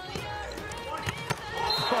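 Players' voices on an indoor volleyball court, with two sharp knocks of a ball bouncing on the court a little past a second in, the second louder, over background music.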